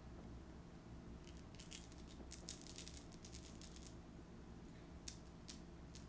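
Quiet room with a steady low hum, broken by light clicks and taps: a cluster between about one and three seconds in, and a couple more near the end.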